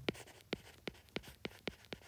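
Stylus tapping and scratching on a tablet while a word is handwritten: a quick, uneven run of about ten light ticks, roughly five a second.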